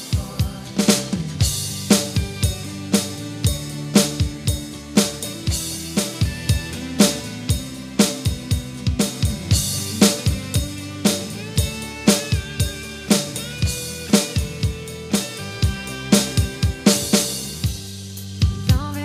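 Electronic drum kit played in a steady backbeat of kick, snare and cymbals along with the song's instrumental backing, with no vocals. Strikes land about twice a second over sustained pitched backing lines.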